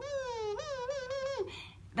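Beatbox 'kazoo' sound: a hummed tone with the bottom lip vibrating against the edge of the top teeth, sounding just like a kazoo. It is held for about a second and a half at a fairly high pitch with a slight wobble, then stops. The lip is at the sweet spot, giving a good tone.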